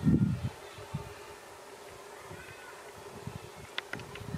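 Outdoor background sound: a brief low thump on the microphone at the start, then a steady faint hum with a few faint high chirps and short clicks near the end.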